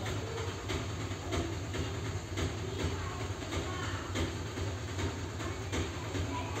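A steady low hum with irregular faint clicks.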